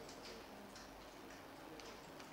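Near silence: faint room tone with a few faint ticks.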